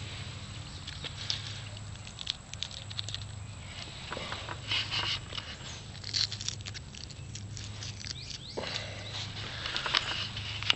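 Leafy ground cherry plants rustling as they are handled at close range, with many scattered small crackles and clicks from stems and papery husks, in denser rustling spells about halfway through.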